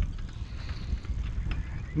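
Wind buffeting an action-camera microphone, an uneven low rumble.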